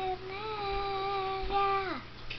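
A young girl singing without accompaniment, holding long, steady notes; the last note slides down in pitch near the end.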